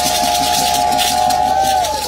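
Shakers rattling in a quick, even rhythm, about five shakes a second, under one long, steady high note that dips away just before the end.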